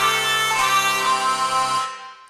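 Sampled hurdy-gurdy (Sonokinetic Hurdy Gurdy library) playing a steady drone with melody notes moving above it, dying away near the end as the keys are released.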